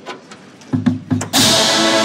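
Drum and bugle corps music: a few short low accents, then about halfway through the full brass line comes in on a loud, sustained chord.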